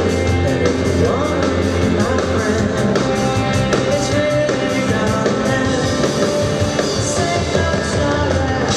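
A live rock band with electric guitar, bass and drums playing loudly through amplification, with a woman singing lead over it.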